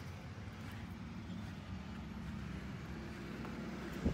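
Steady low hum of a motor vehicle's engine some way off, over faint outdoor background noise.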